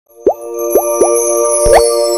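Animated logo intro sting: three quick rising bubble-like pops, then a longer upward swoop near the end, over a bright sustained musical chord that swells in.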